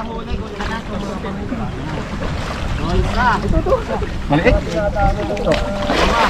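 Muddy water sloshing as people wade and lunge through it, with wind buffeting the microphone and voices calling out now and then.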